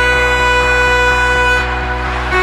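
Background music: a long held note over a steady bass, easing off near the end.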